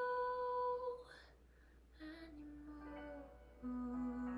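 A young woman's voice holds a long steady note that ends about a second in, then hums lower, softer held notes to the close of the song over a quiet piano backing track.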